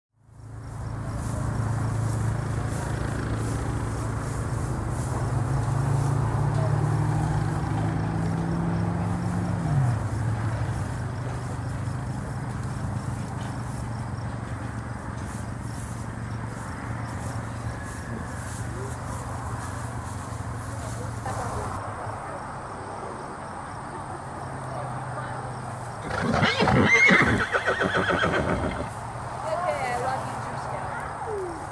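A horse whinnies loudly near the end, over a steady low hum that rises slightly in pitch and drops away about ten seconds in.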